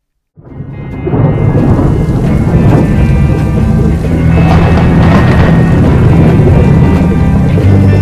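Thunderstorm sound effect: thunder rumbling and rain hissing under a music track with sustained notes. It comes in from silence and swells to full loudness in about a second.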